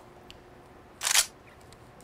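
A single short rustle about a second in, from a battery being handled in a gaff-tape pouch with a Velcro flap; otherwise quiet room tone with a faint steady hum.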